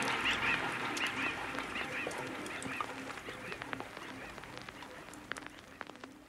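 Birds calling in quick repeated honking notes, several a second, growing fainter until they fade out at the end, with a few light ticks.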